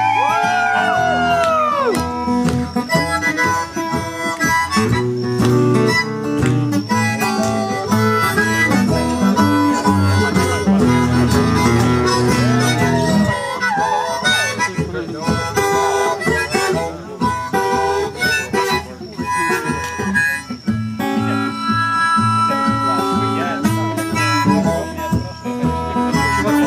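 Harmonica played into a microphone over a strummed acoustic guitar, the harp bending notes up and down near the start and again about halfway through.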